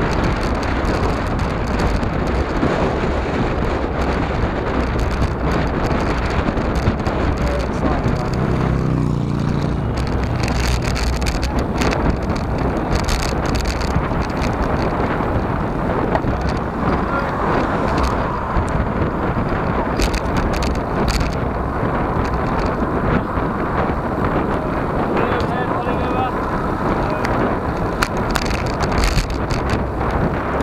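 Steady wind rush and road noise picked up by a handlebar-mounted camera's microphone on a road bike being ridden along asphalt.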